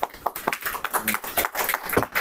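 A small group of people clapping their hands in applause, an irregular patter of many separate claps.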